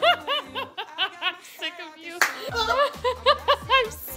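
Loud, helpless laughter in quick, high-pitched bursts, several a second, easing briefly midway and then picking up again.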